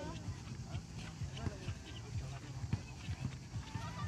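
Outdoor gym equipment in use: a few sharp metal knocks and clicks from the handles, pivots and seats, over background voices.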